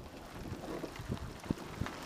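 Wind buffeting the microphone of a camera on a moving bicycle, with scattered knocks and rattles from the bike riding over a rough towpath; one sharp knock about one and a half seconds in.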